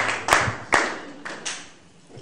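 Congregation applause dying away, with a few sharp single claps standing out over the fading patter of hands until it falls quiet near the end.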